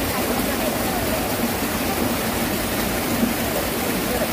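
Small rocky mountain stream running and splashing over stones in a steady rush of water.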